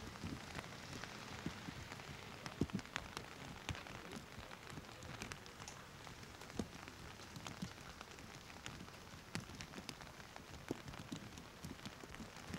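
Steady rain falling outdoors, an even hiss broken by many scattered sharp ticks of drops striking nearby surfaces.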